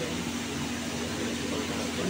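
A steady mechanical hum with an even hiss over it, holding a low drone throughout.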